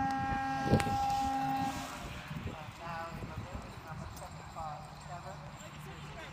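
Show-jumping start signal: a steady electronic buzzer tone held for about two seconds, with a sharp click partway through. It is followed by a voice and a horse's hoofbeats.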